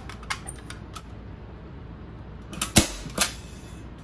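A staple gun fires with one sharp snap about three-quarters of the way through, driving a staple through fleece fabric into the ottoman frame. A smaller click follows it, and a few faint clicks of handling come before it.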